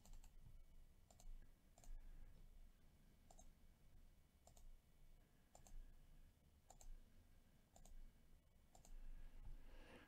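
Faint computer mouse clicks, about one a second, as a web page's randomize button is clicked over and over.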